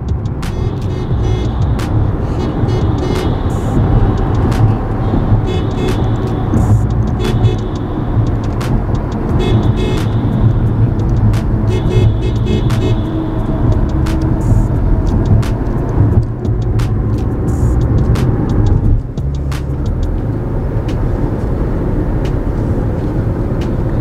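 Road and engine noise of a car driving through a road tunnel, heard from inside the cabin: a loud, steady rumble with frequent short clicks.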